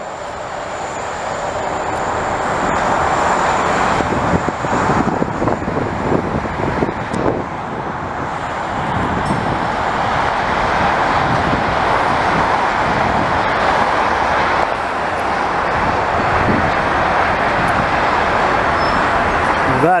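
Diesel freight locomotives running as the train moves through a rail yard, mixed with steady highway traffic noise. The sound swells over the first few seconds and then holds steady.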